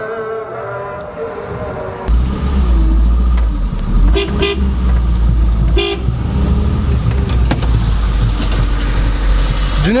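Heavy low rumble of a car in motion, starting suddenly about two seconds in. Two short car-horn toots come near the middle, a second and a half apart.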